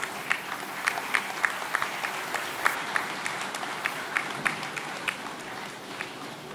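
Audience applauding: a steady patter of clapping, with sharper individual claps standing out irregularly throughout.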